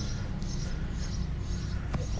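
Outdoor ambience: a steady low rumble with faint, short high chirps repeating every few tenths of a second, and a click near the end.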